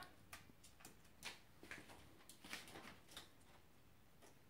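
Faint, irregular light ticks and clicks: a cockatoo's claws and beak on the wire rack and dishes of a dishwasher.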